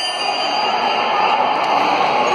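Boxing ring bell struck once and ringing out as it fades, marking the end of a round, over steady background arena noise.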